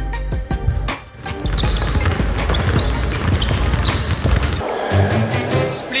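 Background music with a beat, over basketballs bouncing on a hardwood gym floor.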